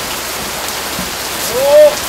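Heavy rain pouring steadily onto a gravel rooftop. Near the end a single brief shouted call from a voice cuts through, the loudest moment.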